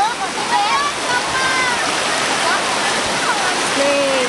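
Loud, steady rush of a river in flash flood, with distant voices calling over it now and then.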